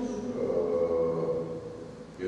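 A person's voice held on a long, drawn-out hum-like tone that wavers slightly in pitch and fades near the end.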